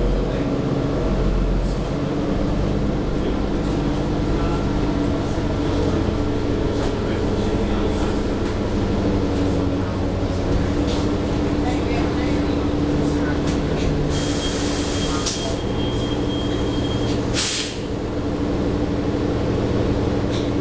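Cabin sound of a New Flyer XDE40 diesel-hybrid city bus under way: the steady hum of its Cummins L9 diesel and Allison hybrid drive with road noise. Partway through come two hisses of released compressed air, a longer one and then a short one, as the bus's air system vents with a stop requested.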